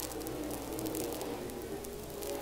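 Faint, distant drone of a pack of dirt-track modified race cars' engines running together under a hiss of noise.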